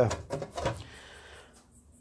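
Faint handling noise: a few soft taps and rustles during the first second and a half, fading to near silence.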